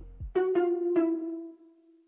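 Synth bell preset in Arturia Analog Lab V sounding three short pitched notes in quick succession, each ringing and decaying, fading out about one and a half seconds in.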